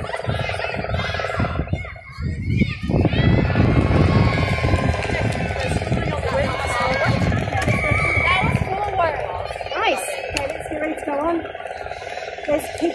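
Touch football players' voices calling and shouting across the pitch, over a steady low rumble.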